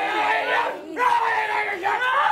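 Several people yelling together in long, held cries, with a short break a little before one second in.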